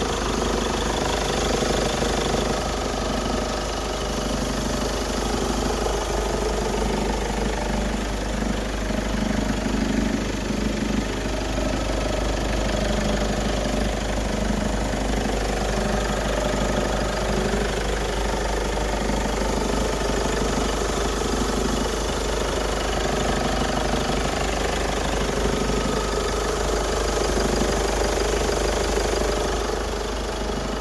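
2007 Kia Sportage's 2.7-litre V6 petrol engine idling steadily, heard with the hood open.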